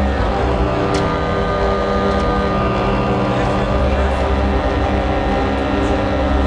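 Live synthesizer noise music: a dense, steady drone of many layered sustained tones over a heavy low rumble, with a sharp click about a second in.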